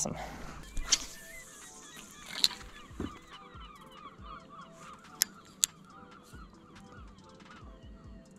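A flock of birds calling, many short cries overlapping, with two sharp clicks a little after five seconds in.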